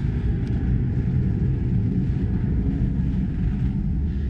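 Steady, uneven low rumble of wind buffeting the microphone, with no engine note in it.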